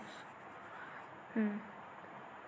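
A man's brief voiced sound, a short hesitation like "uh" or "hm", about one and a half seconds in, over faint steady hiss.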